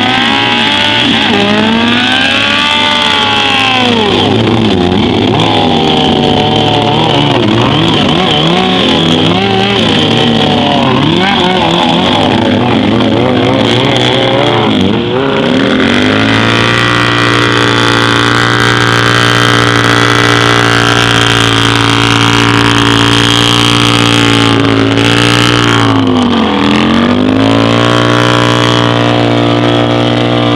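A four-cylinder motorcycle engine revving up and down again and again as the bike spins circles on grass. About halfway through, the sound changes to a V-twin cruiser engine held at steady high revs, with one brief dip in revs near the end.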